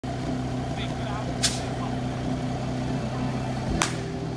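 Portable fire pump engine idling with a steady hum. Two sharp cracks cut across it, about one and a half seconds in and again near the end, the second just as the team leaves the start line.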